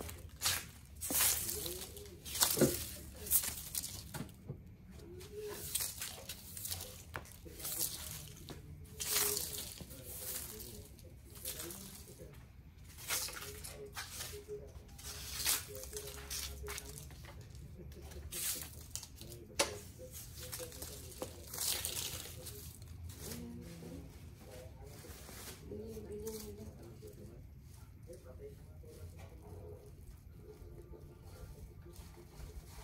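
Broom sweeping dry leaves across a concrete floor: a series of short swishing strokes a second or two apart, thinning out and growing quieter in the last few seconds.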